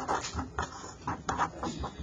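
Red felt-tip pen writing on paper: short, irregular scratchy strokes.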